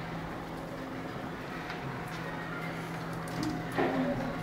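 Steady hum of desktop computers in a small room, with a few faint clicks and a brief louder sound near the end.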